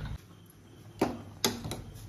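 Steel tongs clicking against a stainless-steel saucepan of boiling noodles: three short, sharp clicks in the second second.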